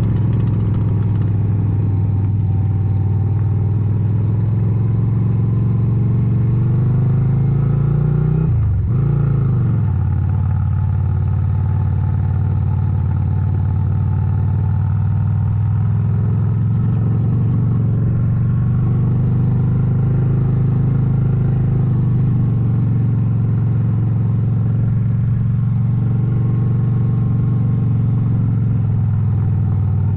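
Yamaha Virago 250's small air-cooled V-twin engine running steadily while the motorcycle is ridden. Its pitch dips and climbs back up about nine seconds in.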